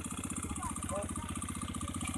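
Small motorcycle engine on a homemade four-wheeled buggy, running steadily with a fast, even beat.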